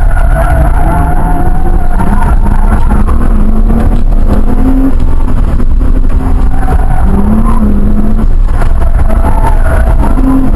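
Car engine heard from inside the cabin during an autocross run, with a heavy low rumble. Its pitch rises and falls several times as the driver accelerates and lifts between the cones.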